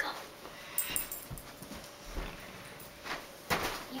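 A dog being moved aside as it shifts about, with a few scattered clicks and knocks around one second in and again near the end.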